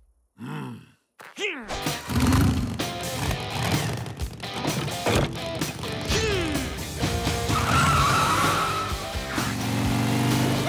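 Cartoon soundtrack: after a near-silent second and a half, busy music full of slapstick sound effects, with quick sliding pitch glides and zipping, skid-like effects as a character dashes off.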